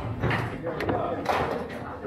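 Foosball ball struck by the plastic rod figures and knocking off the table walls: a few sharp knocks, over voices in the background.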